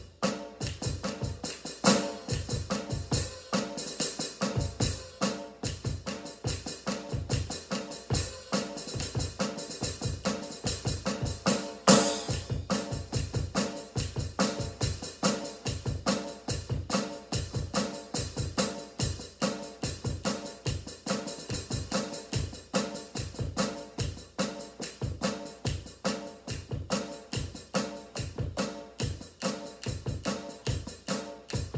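Drum kit played in a steady, fast, unbroken groove of even strikes, with a louder accent hit about twelve seconds in.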